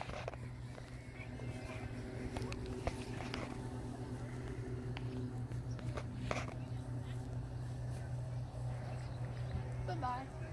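Outdoor background of faint, indistinct voices over a steady low hum, with a few light clicks or knocks.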